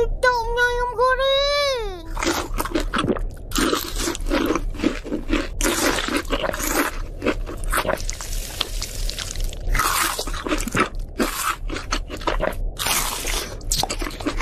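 Crisp fried chicken being bitten and chewed, a rapid run of loud crunches going on for many seconds. It opens with a child's pleased humming 'mmm' that glides up and down.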